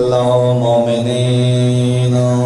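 A man's voice holding one long, steady chanted note in a melodic recitation, sung into a microphone.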